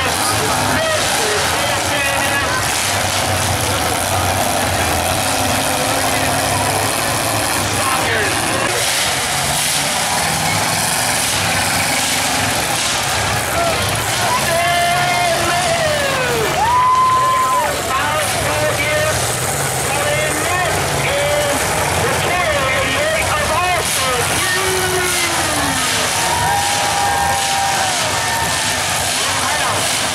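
Several demolition derby cars' engines running over a continuous loud din, with shouts and calls from a crowd rising and falling over it.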